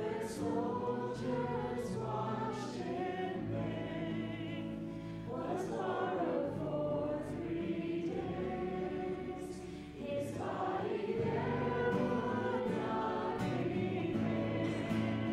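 Several voices singing a worship song together, with acoustic guitar accompaniment.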